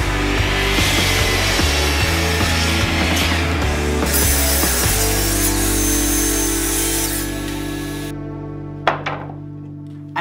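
A Bosch miter saw cutting through a block of old reclaimed wood, under background music. The saw noise stops abruptly about eight seconds in, leaving the music's held chord to fade, and a sharp click comes about a second later.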